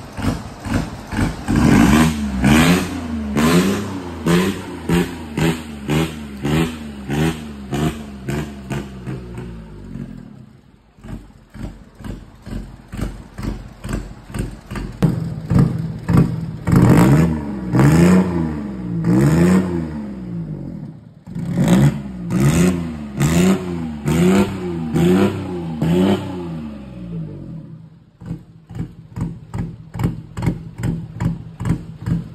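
Gravely JSV3000 side-by-side's diesel engine, run bare on the bench through a tall upright exhaust stack, being revved by hand in quick repeated throttle blips, its pitch rising and falling about twice a second. It settles to a lower, steadier run for a few seconds in the middle, then the blipping starts again.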